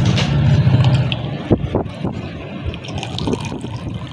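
Cooking oil poured in a thin stream into water in a pressure cooker, trickling into the liquid, with a couple of short clicks about midway.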